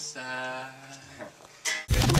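Guitar chord ringing out and fading over about a second, followed near the end by a short, very loud burst of noise.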